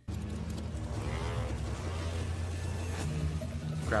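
A TV drama's soundtrack: music over a truck engine running steadily, starting suddenly when playback resumes; a voice starts right at the end.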